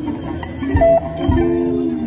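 Live electric blues: an electric guitar plays a lead fill in the gap between sung lines, over Hammond organ, electric bass and drums.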